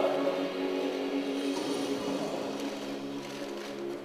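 Background music with long held notes, slowly fading.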